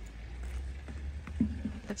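Steady low rumble of wind on the microphone, with a voice starting near the end.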